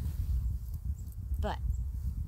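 Wind buffeting the microphone: a gusting low rumble.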